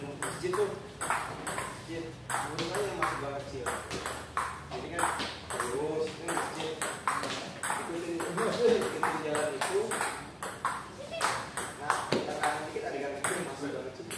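Table tennis rally: the ball clicking sharply off the paddles and bouncing on the table in a quick, steady run of about two hits a second, with voices talking in the background.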